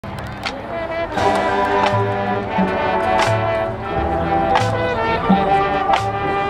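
Marching band playing outdoors: massed brass holding sustained chords over sharp percussion hits, growing louder about a second in.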